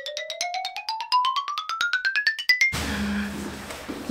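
A quick run of short mallet-struck notes climbing steadily in pitch, many strikes a second for nearly three seconds, like an ascending xylophone glissando sound effect. It cuts off suddenly, giving way to room noise with a low steady hum.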